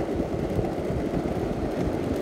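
Wind buffeting the microphone over the rolling rumble of an electric longboard's polyurethane hub-motor wheels on asphalt, a steady rushing noise while riding along.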